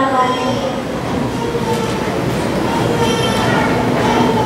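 A woman's voice, faint and drawn out, at a microphone, half buried under a loud, steady rushing rumble.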